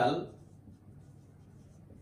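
Faint strokes of a marker pen on a whiteboard, just after a spoken word trails off at the start.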